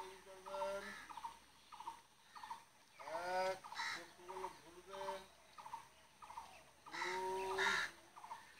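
A man's voice calling out exercise counts in a steady rhythm, short syllables about two a second, with a longer, louder call about three seconds in and again near the end.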